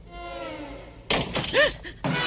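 A sudden loud thud about a second in, followed by a short high-pitched sound that rises and falls in pitch, over a faint wavering tone. A sustained music chord cuts in at the end.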